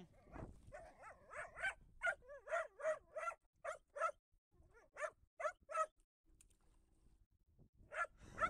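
Dog barking and whining in a quick run of short, pitched yaps that stops about six seconds in.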